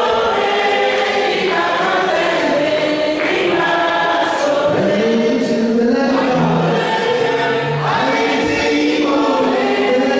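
A group of voices singing a gospel hymn together, holding long sustained notes, led by a man singing into a microphone.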